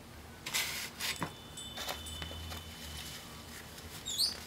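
Close-up eating sounds from a chicken wing: a short crisp bite about half a second in, then a few soft mouth clicks while chewing.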